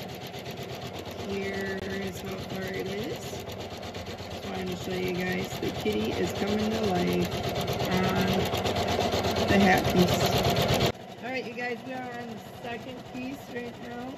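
Janome MC550E embroidery machine stitching out a fill design on fleece: a fast, steady needle clatter. About eleven seconds in, the sound drops sharply in level and changes, with the stitching still going.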